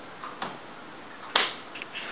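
Quiet room tone broken by two short clicks: a faint one about half a second in and a sharper one about a second and a half in.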